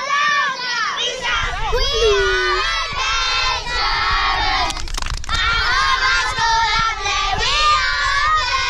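A crowd of children shouting and chanting together, many voices overlapping. A low rumble runs underneath from about a second in.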